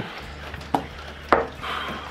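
Two sharp knocks about half a second apart, the second louder, over a low steady hum.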